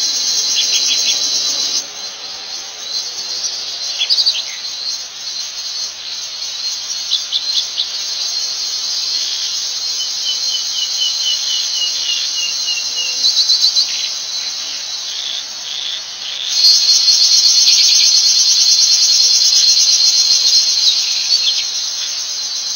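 Steady shrill insect chorus, with birds chirping and calling over it, including a quick run of short repeated notes partway through. The insect noise grows louder about three-quarters of the way in.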